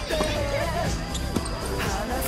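Tennis balls being hit with rackets and bouncing on a hard court during a doubles rally: a few sharp hits, one near the start, one past the middle and one near the end, over background music.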